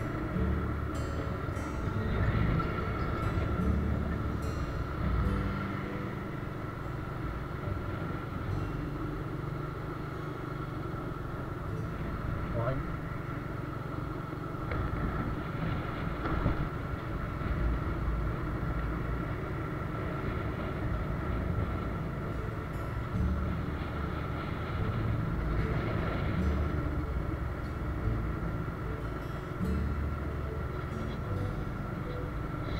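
Riding noise from a moving motorbike: wind buffeting the microphone over a steady engine and road hum, with a faint steady whine.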